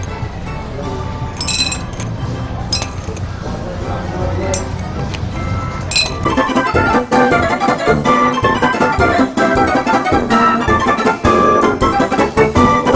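Plastic toss rings clinking off glass bottles: a few sharp, ringing clinks over the first half. Keyboard music comes in about halfway and carries on.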